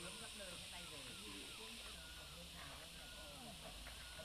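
Faint, indistinct voices of several people talking at a distance, over a steady hiss.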